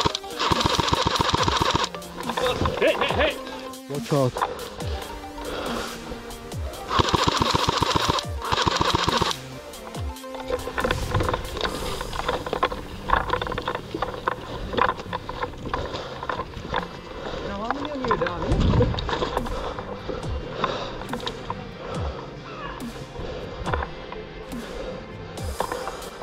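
Two bursts of rapid full-auto airsoft rifle fire, one at the start lasting about two seconds and another about seven seconds in lasting about two and a half seconds, over background music that carries on through the rest.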